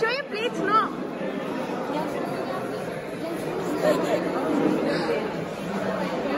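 Many people talking at once: steady overlapping chatter, with a brief high-pitched voice call in the first second.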